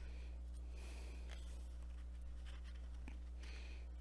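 Faint rustle of coloring-book paper pages being handled, over a steady low hum.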